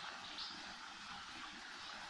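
Faint, steady rush of running water from a forest stream, with a soft high chirp about half a second in.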